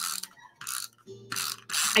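Tape runner being drawn across the back of cardstock in several short strokes, each a quick rasping, ratcheting zip as the adhesive tape unrolls.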